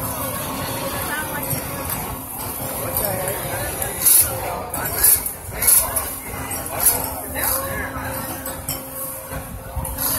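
Busy fairground midway background: crowd chatter and music with a steady low hum, broken by four sharp clinks between about four and seven seconds in.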